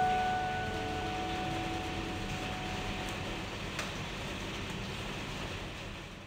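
Steady rain hiss, with the last note of a piano piece ringing out and dying away over the first few seconds. The rain fades out near the end.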